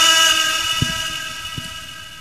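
A single held musical note, rich in overtones, fading away steadily over about two seconds, with two faint knocks partway through.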